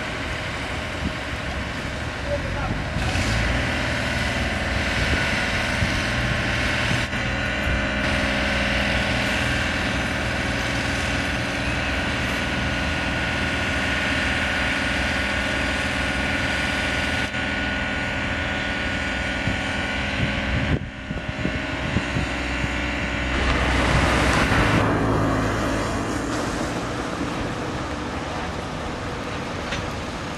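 Steady engine and machinery noise, typical of a crane and heavy vehicles at work on a construction site. The sound changes abruptly several times and swells louder for a couple of seconds near the end.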